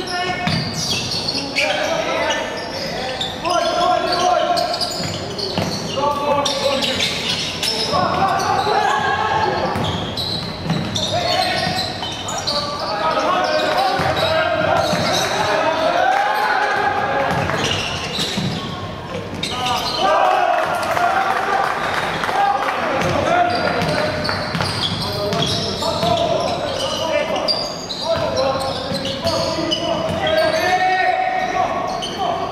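On-court sound of a basketball game in a large hall: the ball bouncing on the hardwood floor in short, sharp knocks, with players and coaches calling out and echoing through the gym.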